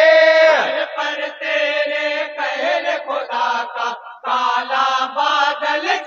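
A group of men chanting an Urdu naat in chorus into a microphone, with a short break in the voices about four seconds in.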